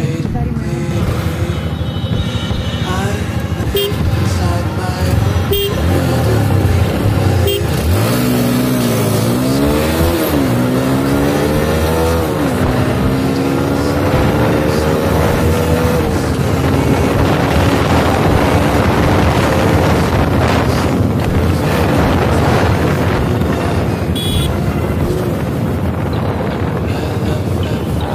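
Single-cylinder engine of a TVS Apache RTR 160 4V under hard acceleration, heard from the rider's seat. The revs climb and drop back at each upshift about eight to twelve seconds in, then hold nearly steady at speed, with wind rushing over the microphone.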